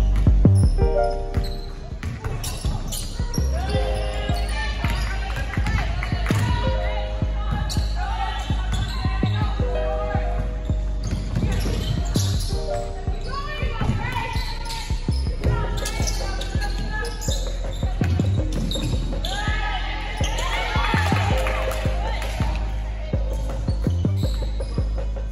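Basketballs dribbled and bouncing on a hardwood gym floor during team drills, with players and coaches calling out in a large gym.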